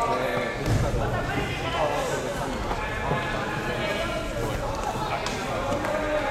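Indistinct chatter of several overlapping voices in a large gym hall, with a low thump just under a second in.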